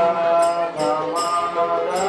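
Group devotional chanting (kirtan): voices singing a gliding chant melody, with small hand cymbals struck in a steady beat of about two to three strokes a second.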